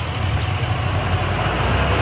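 A motor vehicle's engine and road noise: a steady low rumble with an even hiss over it.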